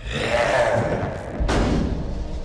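Movie soundtrack sound effects: a vampire creature's snarl that falls in pitch, then a heavy thud about one and a half seconds in, over a film score.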